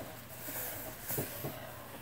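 Quiet room with faint handling sounds: a shirt being held up and a small adhesive skin patch being fingered, giving a few soft ticks over a low steady hum.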